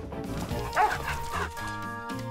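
Gentle background music, with a short cartoon puppy yelp or whimper about a second in.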